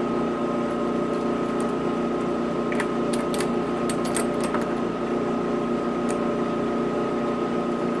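Balzers HLT-160 helium leak detector running with its Edwards ESDP-30 dry scroll pump, a steady hum of several tones. A few light metal clicks come in the middle as the calibrated leak is fitted to the KF25 flange port.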